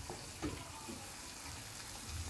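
Pan of spiced jackfruit-seed curry sizzling steadily on the stove, with a faint knock about half a second in.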